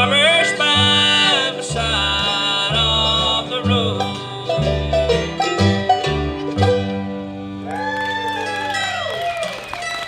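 Bluegrass band of banjo, fiddle, mandolin, acoustic guitar and upright bass playing the closing bars of a song over a steady bass beat. The beat stops about two-thirds of the way in, and the band ends on a held final chord with sliding fiddle notes over it.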